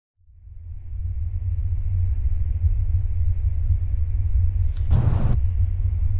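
Opening of a band's song recording: a deep, low bass drone fades in out of silence over about a second and holds steady, with a short hissing burst, like a cymbal swell, about five seconds in.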